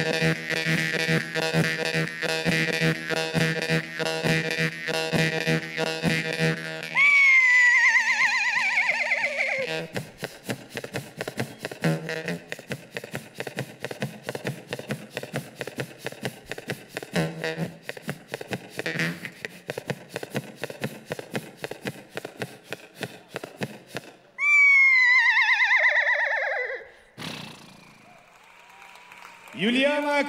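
Jaw harp played into a microphone: a buzzing drone with fast, rhythmic plucking, loud at first and softer through the middle. Twice a long, wavering cry falls steeply in pitch, about a quarter of the way in and again past the midpoint.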